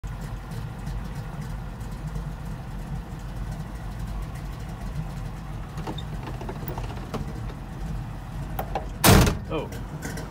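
Ford Falcon's engine idling steadily, heard from inside the cabin. About nine seconds in, a short, loud thump breaks in.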